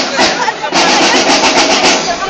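Parade drumming and music, loud, with people's voices close by; a fast, even drum beat of about eight strokes a second sets in just under a second in.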